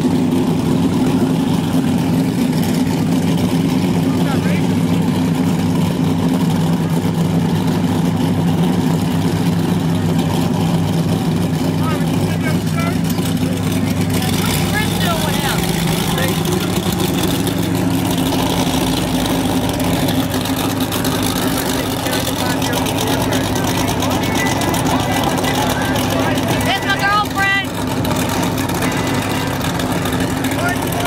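Powerboat engine running with a steady low drone, its pitch shifting slightly about halfway through, with voices faintly over it.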